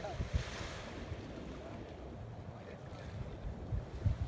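Wind buffeting the microphone in irregular low gusts, over a steady hiss of distant surf.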